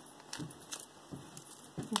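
Small pieces of costume jewelry clinking and clicking lightly as they are handled, a few separate light clicks spread over the two seconds.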